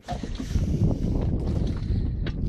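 Wind noise on the microphone: a steady rush, heaviest in the low end.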